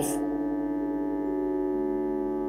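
A soft sustained chord held on a Nord Stage 2 keyboard, with a lower note joining near the end.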